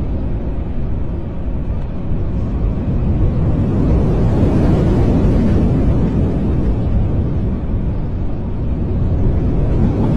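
Storm wind blowing across the microphone: a loud, steady low roar that swells for a few seconds in the middle, with rough sea churning beneath it.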